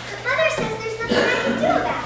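Children's voices speaking, a few short phrases one after another.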